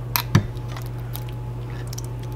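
Spoon working crushed pineapple into a glass trifle bowl: two quick knocks near the start, the second with a dull thud, then faint wet clicks, over a steady low hum.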